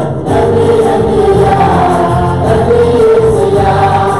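A worship team of male and female voices singing a Tamil praise song together into microphones, in long held notes. The singing breaks off briefly at the very start and picks up again a moment later.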